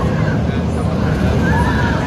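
Steel roller coaster train running along its track close overhead, a steady heavy rumble, with riders' wavering screams above it.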